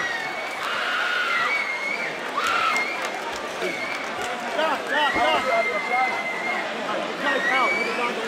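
Fight crowd and corner people shouting and calling out over one another, several voices at once, with a long held yell about five to six and a half seconds in.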